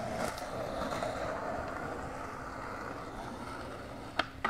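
Two skateboards rolling on rough asphalt: a steady rolling noise from the wheels that slowly fades as the boards move away.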